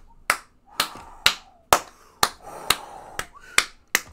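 A man clapping his hands in excitement: about nine sharp claps, roughly two a second.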